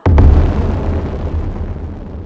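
A deep boom that hits suddenly and rumbles away over the next two seconds, an explosion-style sound effect.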